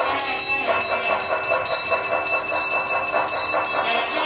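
Temple bells ringing steadily under sustained, reedy, horn-like tones and fast percussion: the ritual music that accompanies an abhishekam.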